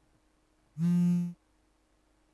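A phone vibrating once, a single steady buzz of about half a second, as a new text message comes in.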